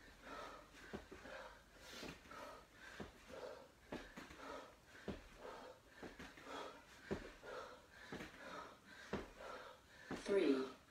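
A man breathing hard from exertion, faint, short rhythmic puffs about twice a second, with occasional soft knocks.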